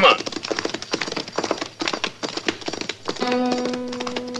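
Hoofbeats of horses moving off, a rapid run of knocks. About three seconds in, a held brass chord of a music bridge comes in over the hooves.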